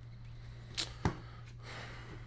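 A card drawn from a deck of oracle cards: a short swish about a second in, followed at once by a sharp tap, then a soft sliding rustle near the end.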